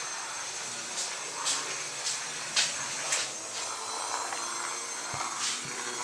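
Two small toothbrush vibrator motors running fast with a buzzy whine, overdriven by two 9-volt batteries well above their 1.5–3 volt rating, as the mouse-bodied robot skitters over a wooden floor. A few sharp clicks and knocks break in along the way.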